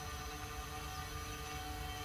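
Faint steady electrical hum with a few fixed tones over a low hiss, no other events.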